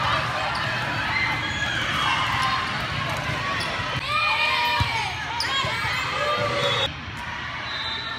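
Indoor volleyball play: players calling out and spectators talking, with a few sharp hits of the ball. The sound drops abruptly about seven seconds in.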